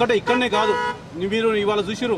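A man speaking into microphones: only speech, with one steady, held tone about half a second in.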